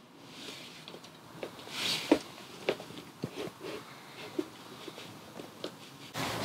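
Scattered light clicks and knocks, with a short scrape about two seconds in, as clamp brackets are shifted along a laptop table's metal base tube.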